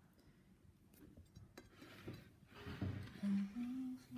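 Quiet room with faint rustles, then a person hums two held notes during the last second, the second a little higher than the first.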